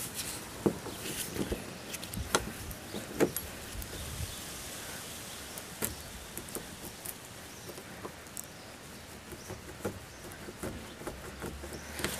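Scattered small metallic clicks and scrapes of long-nose pliers gripping and working at a seized screw in a tailgate hinge.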